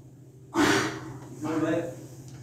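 A man's voice praying aloud in short, unclear bursts, the first breaking in sharply about half a second in with a gasping breath, a second, weaker phrase following.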